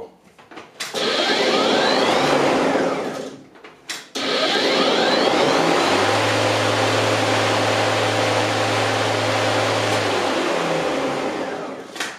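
DeWalt DCMW564 twin-18V cordless lawn mower's motor and blade spinning up with a rush of air, then winding down. About four seconds in it starts again, runs steadily with a low hum and slowly coasts to a stop near the end once the dead-man's bail is released.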